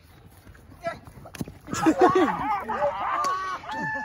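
A group of young men shouting and shrieking over one another. It starts about a second and a half in, just after a single sharp knock, following a short quiet spell.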